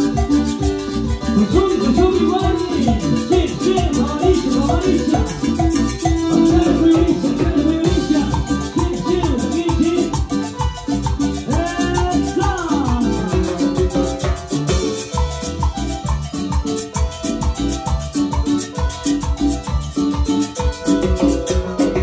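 Live Latin dance music from a band, with electronic keyboard melody over a steady, driving beat.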